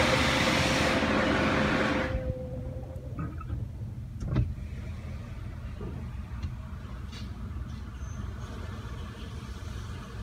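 High-pressure water spray from a touchless automatic car wash hitting the truck, heard from inside the cab during the spot-free rinse, cutting off sharply about two seconds in. A low steady rumble follows, with a single knock a little after four seconds.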